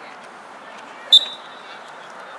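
Referee's whistle: one short, sharp, high blast about a second in, over faint background voices.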